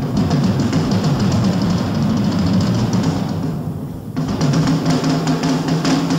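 Drum kit solo in a live jazz-fusion performance: fast, dense rolls around the tuned toms, with snare and cymbals above. It thins out briefly just before four seconds in, then a fresh burst of rolls starts.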